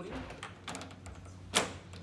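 A sliding mosquito-screen panel moved by hand along its window track, with light clicks and one sharp knock about one and a half seconds in as the screen frame strikes the window frame.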